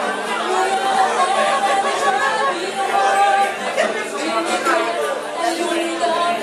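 Many people talking at once in a crowded bar room, a steady hum of overlapping voices.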